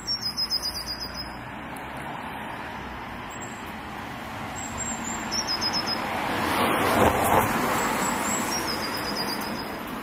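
A car passes along the street, its engine and tyre noise building to a peak about seven seconds in and then fading. A small bird sings three short, rapid trills, near the start, in the middle and near the end.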